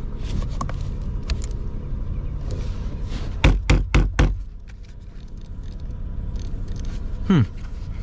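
Four quick knocks on the plastic housing of a 2006 Honda Odyssey's front HVAC blower motor, tapped to see whether a sticking motor will start. The blower stays silent through the tapping, over the low steady rumble of the idling engine.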